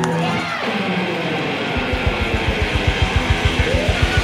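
Live rock band music: a held chord with sliding notes over it dies away, and about two seconds in a fast, even low pulse starts, roughly nine beats a second.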